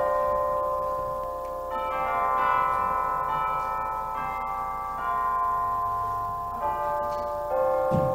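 Slow instrumental postlude in bell-like chime tones: several notes held together as sustained chords, with the chord changing every second or two.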